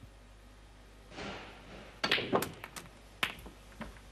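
Snooker cue striking the cue ball and the balls clicking together: a quick cluster of sharp clicks about two seconds in and one more sharp click about a second later.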